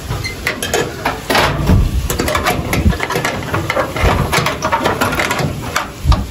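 Small metal padlock and rusty hasp being handled and snapped shut, with many irregular metallic clicks and rattles as the lock knocks against the corrugated galvanized iron sheet it hangs on.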